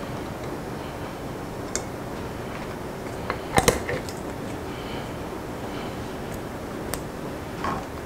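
A few light clicks and knocks of a fork and sauce bottle against a ceramic bowl on a wooden cutting board, the loudest cluster near the middle, over a steady background hum.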